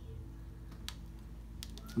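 Wood fire burning in a small cast-iron wood stove, giving a few sharp crackles about a second in and near the end, over a steady low hum.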